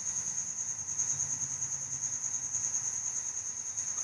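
Steady background noise of the recording: a constant high-pitched tone that pulses faintly, over a low hum and light hiss.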